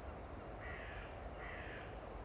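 A crow cawing twice, two harsh calls of about half a second each, close together.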